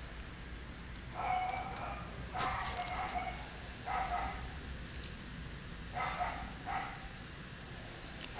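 A dog barking in short bursts, about five times with pauses between.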